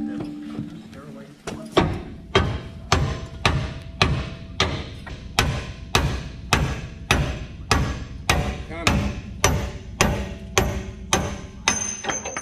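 Repeated hammer blows on steel driving an old pivot bushing out of a Hendrickson trailer suspension hanger: about twenty strikes at an even pace of roughly two a second, starting about two seconds in.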